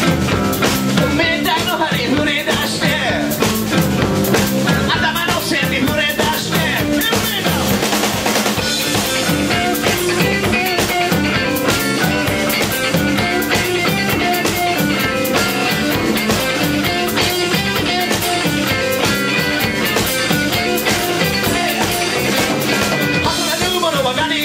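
Live blues-funk rock band playing an instrumental passage: electric guitars over bass and a drum kit keeping a steady beat, with a repeating run of guitar notes from about a third of the way in.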